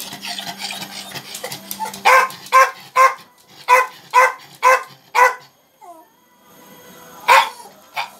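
A dog barking: a run of about seven quick barks, about two a second, then a short falling whine and one more bark near the end.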